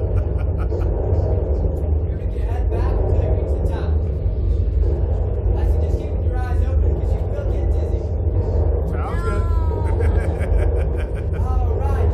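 A steady low rumble, with indistinct voices and a few short high-pitched calls over it, the clearest about nine seconds in.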